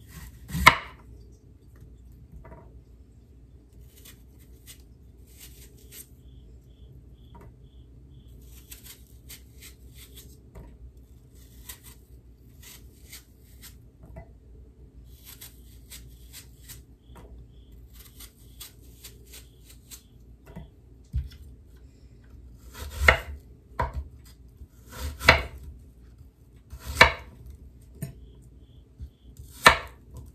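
Kitchen knife cutting apples on a cutting board: one sharp chop about a second in, faint clicks and scrapes for a long stretch, then four loud chops on the board near the end.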